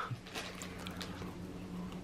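Faint, soft, wet mouth sounds as a marshmallow is pushed into a mouth already full of marshmallows, a few small clicks in the first second, over a steady low hum.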